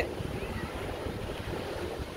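Ocean surf breaking steadily on a sandy beach, with wind buffeting the microphone.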